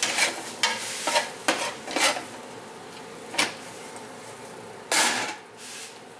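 A utensil scraping and knocking against a ceramic-coated frying pan as slices of ribeye steak are pushed about and lifted out, over a faint sizzle. There are about half a dozen short scrapes, with a longer, louder one about five seconds in.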